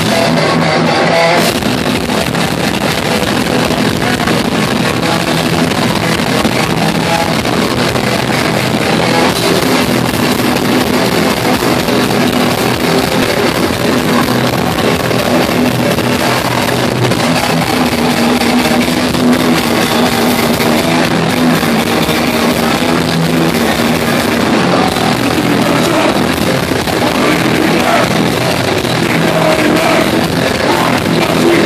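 A live metal band playing an instrumental passage at a steady high level, with heavily distorted electric guitars over bass and drums.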